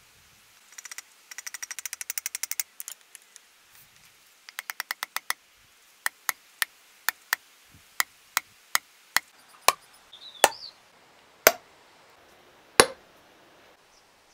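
Hammer blows seating a new wooden handle in a ball-peen hammer head set in an anvil's hardy hole. Two quick flurries of light taps, then single strikes that slow and grow heavier; the last three are the loudest and ring briefly.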